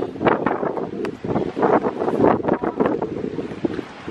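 Wind buffeting the microphone in irregular, loud gusts.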